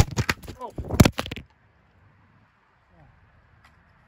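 Pepper tree branches being snapped by hand: a quick run of sharp cracks and rustling over the first second and a half, with a short grunt among them. It then cuts off to near silence.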